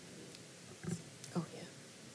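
Faint, soft speech: a couple of short words spoken quietly, well below the level of the talk around it.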